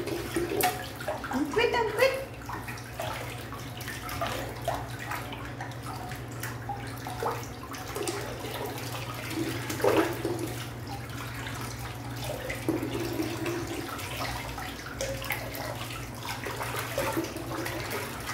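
Water sloshing and splashing in a sink basin as a small dog is washed by hand, over a steady low hum.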